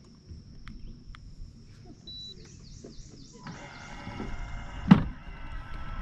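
A short electronic beep about two seconds in, then a Minn Kota PowerDrive V2 electric trolling motor starting up on Spot-Lock with a steady whine from about three and a half seconds, and a single loud thump near the end.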